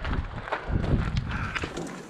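Footsteps crunching on gravel with a few short clicks, under low wind rumble on the microphone.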